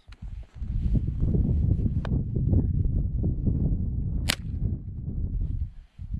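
A single sharp crack of a .22 rifle shot about four seconds in, with a faint click near two seconds, over a steady low rumble.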